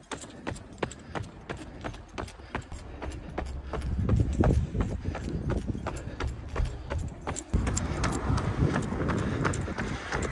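A runner's footfalls in running shoes on pavement, in a steady rhythm of about three steps a second, on a tempo run. A low rumble swells under the steps about four seconds in and again near the end.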